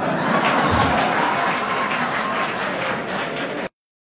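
Audience applauding, a dense spread of many hands clapping, which cuts off suddenly near the end.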